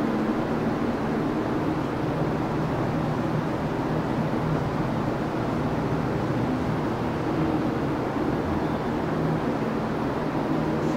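Steady low mechanical hum over an even rushing noise.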